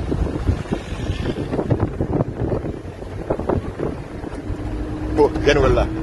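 Low rumble of a moving vehicle with wind buffeting the microphone, under indistinct voices; a man starts speaking clearly about five seconds in.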